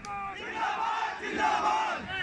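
An angry crowd of men shouting all at once, a loud, overlapping uproar.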